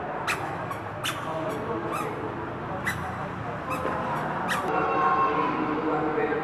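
Indistinct voices and room noise in a temple hall, broken by about six sharp clicks spread over the first four and a half seconds.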